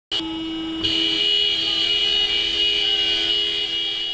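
Several vehicle horns held down together in a long, steady, overlapping blare, growing louder about a second in.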